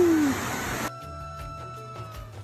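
Rushing stream water with a brief falling cry at the start, cut off abruptly about a second in by background music with held notes and plucked strokes.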